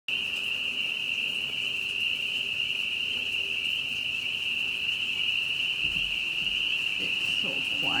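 A dense chorus of small calling animals, heard as one steady high-pitched shrill that never breaks.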